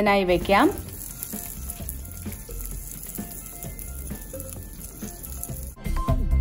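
Masala-coated pomfret sizzling in a perforated grill pan on a gas grill: a steady high hiss that cuts off just before the end.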